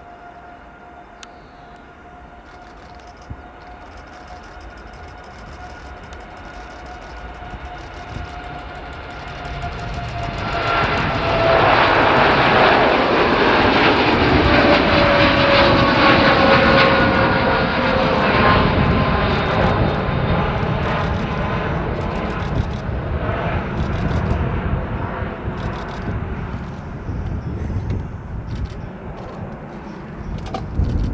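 Boeing 787-8's twin turbofan engines at takeoff power as the airliner rolls, lifts off and climbs past. A whine slowly falls in pitch, then a loud rushing jet noise with crackle builds from about ten seconds in, is loudest for several seconds, and slowly fades as the jet climbs away.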